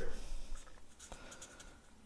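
Pen drawing on a sheet of paper, a faint scratching of the tip across the page.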